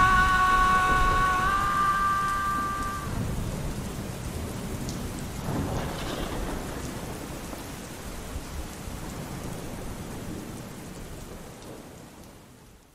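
Steady rain with rumbling thunder, gradually fading out. For the first three seconds a final held musical note rings over the rain, then stops.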